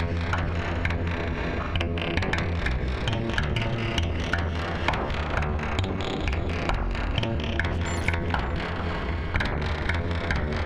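Eurorack modular synthesizer playing a sequenced patch: a steady low bass under many short, clicky sequenced notes.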